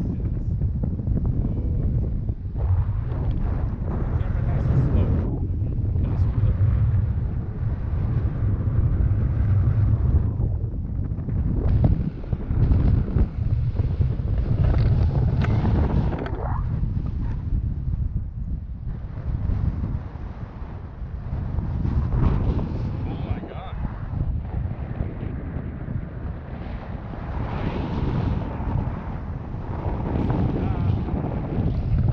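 Wind buffeting an action camera's microphone during tandem paraglider flight: a low rumbling rush that swells and fades in uneven gusts.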